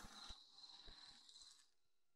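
Near silence: a faint hiss dies away about one and a half seconds in.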